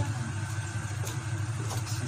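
A steady low hum like a small motor or fan running, with a few faint scrapes and knocks of a wooden spoon stirring thick stew in a nonstick pot.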